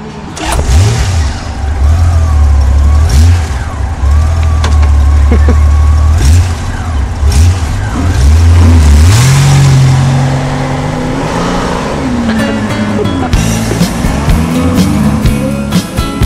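Honda GL1500 Gold Wing's flat-six engine running with a heavy low rumble, rising in pitch about nine seconds in as the sidecar rig pulls away. Rock music comes in during the last few seconds.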